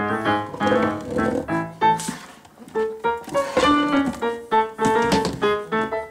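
Piano playing a light tune, a run of single notes and chords, with a brief quieter pause about halfway through.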